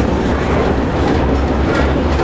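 Electric trolley car running along the track, heard from inside the car: a steady low hum under the continuous noise of wheels on rail.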